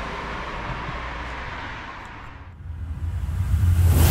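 A rumbling, hissing whoosh from an animated logo outro. It fades away about two and a half seconds in, then swells up again near the end.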